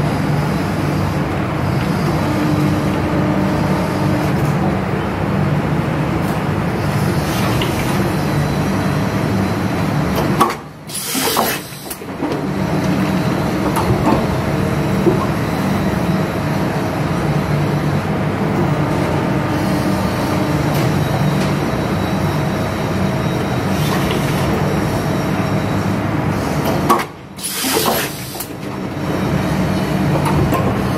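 Injection molding machine running through its cycle: a steady, loud low machine hum, broken twice, about 16 seconds apart, by a brief drop in level with a sharp high hiss.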